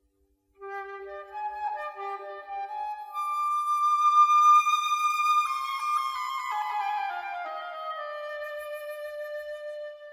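Solo flute playing a slow phrase of classical chamber music: it enters about half a second in, rises to a loud high note held for about two seconds, then steps down to a lower note held until near the end.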